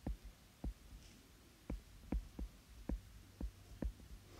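Stylus tapping and ticking on a tablet's glass screen while handwriting: about nine light, irregular taps, faint.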